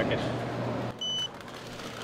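A card payment terminal gives one short, high, steady beep about a second in, over a low background hum.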